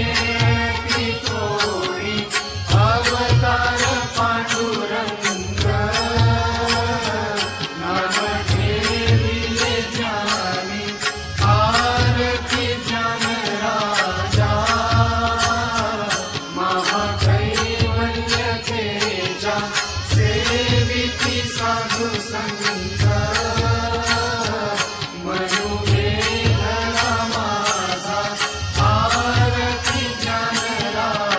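Devotional aarti hymn sung by voices to a repeating low drum beat, one long melodic phrase after another with no break.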